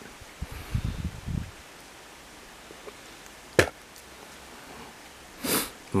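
Low bumps of handling on a handheld camera's microphone about a second in, a single sharp click in the middle, and a short sniff near the end.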